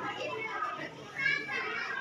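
A crowd of schoolchildren chattering at once in a hall, many voices mixed into a steady murmur, with one child's voice standing out briefly a little after a second in.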